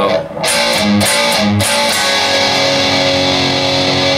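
Electric guitar through a distorted amp channel playing a metal riff: the same chord struck three times, then a chord let ring for the last two seconds.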